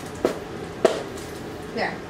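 Two short, sharp clicks about half a second apart as a tip is pressed into a diamond painting pen.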